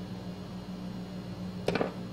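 Brief handling noise near the end, as hands work a stuffed cotton doll and sewing tools, over a steady low hum.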